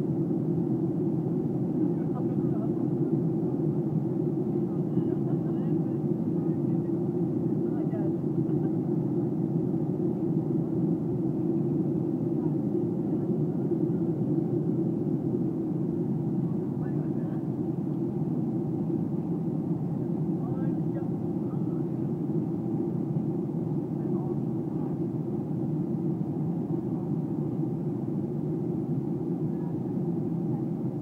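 Steady jet airliner cabin noise, a constant low roar of engines and airflow heard from a window seat of a Boeing 737 on descent. Faint passenger voices come and go in the background.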